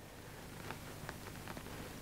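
Quiet room tone: a faint steady hiss with a few soft ticks.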